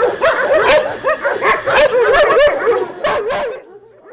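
A pack of shelter dogs barking all at once, many voices overlapping. The noise cuts off suddenly shortly before the end.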